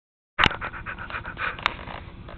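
Quick, short panting breaths, about six a second, with a sharp click as the sound starts and another about a second later.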